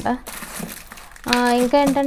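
Crinkling of a plastic snack packet handled in the hands, then a woman's voice starting a little past halfway.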